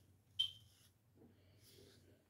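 Hairbrush strokes through hair: two soft brushing swishes, the first, about half a second in, starting with a short sharper tick.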